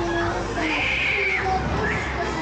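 Loud fairground music from the ride's sound system, with one long, high scream from a rider about halfway through as the pendulum arm swings the gondola high.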